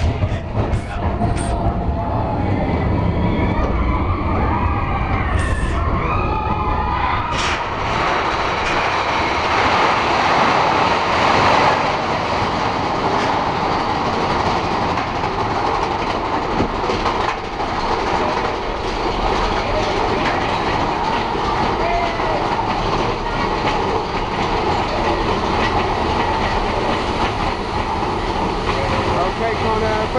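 Mine-train roller coaster cars running along the track: a steady rumble and clatter of wheels on rail.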